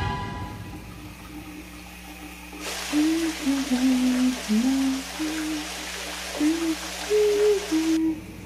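A woman humming a slow tune over the hiss of a running shower. The shower starts about two and a half seconds in, after the previous music dies away.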